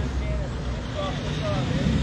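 Steady low rumble of a semi truck passing on a highway, under faint brief speech.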